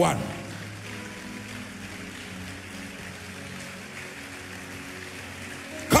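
Soft, sustained background keyboard music holding steady chords, over a steady hiss of noise from a large crowd in a big hall.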